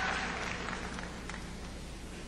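Audience applause dying away, fading steadily to a faint murmur.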